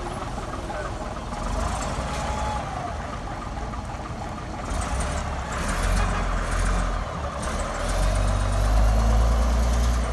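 Double-decker bus's diesel engine pulling away and driving off, its low rumble growing louder over the last few seconds.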